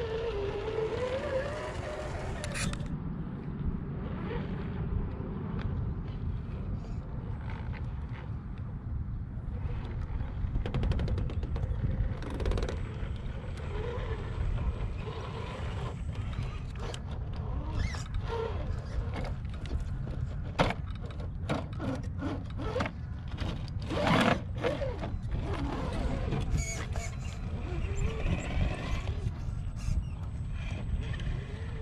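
Electric drivetrains of 1/10-scale RC rock crawlers whining in short bursts as they crawl, with scattered clicks, crunches and scrapes of tyres and chassis on sandstone and grit, over a steady low rumble of wind on the microphone.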